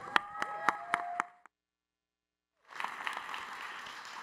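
Audience applause, a steady spread of clapping that starts about two and a half seconds in. It follows the tail of a short musical sting with a few held chime-like notes and scattered claps, cut off abruptly by a second of dead silence.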